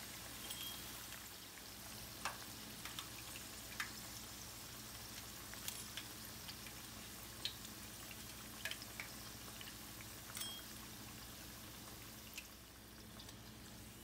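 Chicken keema pakoras deep-frying in a pan of oil: a faint, steady sizzle with scattered small pops and clicks.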